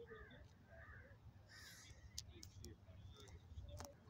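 Near silence with a few faint, distant bird calls, short cries in the first two seconds, over a low rumble.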